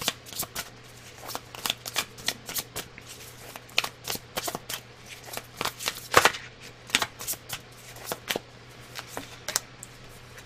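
Deck of oracle cards being shuffled by hand: a long run of irregular card-on-card flicks and snaps, the loudest about six seconds in.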